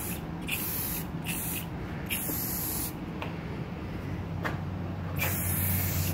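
Aerosol can of Rust-Oleum gloss clear coat spraying in short hissing bursts, three quick passes in the first three seconds, then a pause of about two seconds and another pass near the end.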